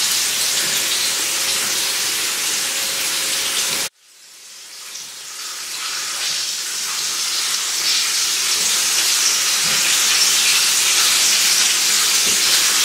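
Hot oil sizzling steadily as food deep-fries. It cuts out abruptly about four seconds in, then fades back up over the next few seconds.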